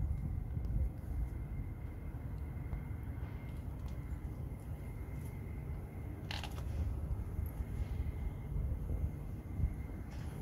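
Low, uneven rumble of wind buffeting a handheld microphone outdoors, with a faint steady high whine and a brief hiss about six seconds in.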